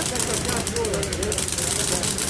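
Miniature replica Sopwith Camel radial engine running steadily on methanol, with a rapid fine ticking for part of the time, under people's voices.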